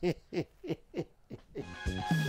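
Hearty laughter in a run of short 'ha' bursts, about three a second, each falling in pitch. A music jingle starts near the end.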